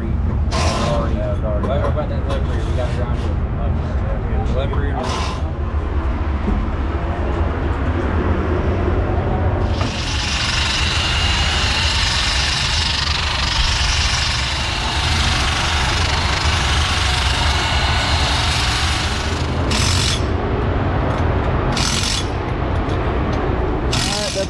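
A corded handheld power tool runs against the tread of a Hoosier dirt-racing tire with a steady high-pitched whir, starting about ten seconds in and lasting about ten seconds, then two short bursts follow. A steady low rumble runs underneath throughout.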